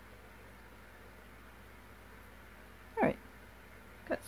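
Faint room tone, broken about three seconds in by one brief, loud vocal sound.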